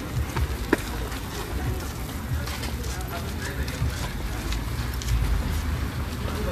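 Outdoor street noise picked up on a handheld phone while walking: a steady low rumble of wind and handling on the microphone with light scattered ticks, and one sharp click about three quarters of a second in.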